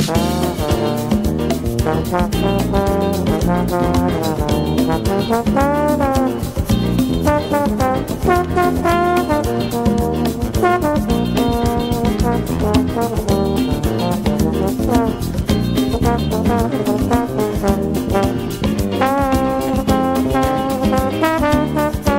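Jazz trombone playing a melody that slides and bends between some notes, over a band with bass and drums keeping a steady beat.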